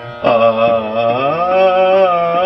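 A male Hindustani classical voice sings one long held vowel in Raag Lalit. It enters about a quarter-second in and glides slowly in pitch, rising near the end, over a steady drone and soft, evenly spaced strokes.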